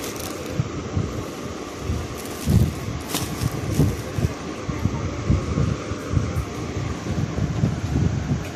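Clear plastic garment wrapping rustling and crinkling as a packaged kurta is handled, with a few sharper crackles a few seconds in and irregular low bumps of handling noise on the microphone.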